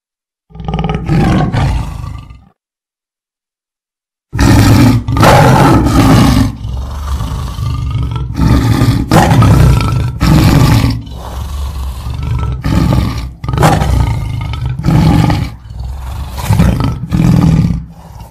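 Tiger roaring: one roar about half a second in, then after a short silence a long run of loud, repeated roars and grunts, about one a second.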